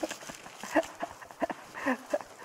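Audience laughing in short, scattered bursts and chuckles that thin out as the laughter dies down.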